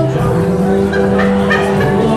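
Live worship band playing: electric guitars, bass and keyboard holding sustained notes.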